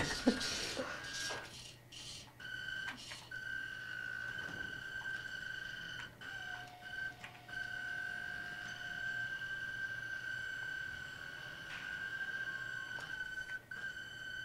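A steady high-pitched whine with an overtone, from the Zybot robot's drive motors running on dying batteries, briefly joined by a lower second tone in the middle.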